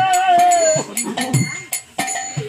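Devotional kirtan music: a singer holds one long, wavering note that breaks off just under a second in, with a new note beginning at the end. Under it small metal hand cymbals strike in a regular rhythm, ringing on after each hit, with a drum beating low.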